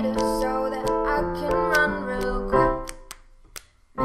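Piano accompaniment playing sustained chords in an instrumental passage of a pop song, breaking off for about a second near the end before the next phrase comes in.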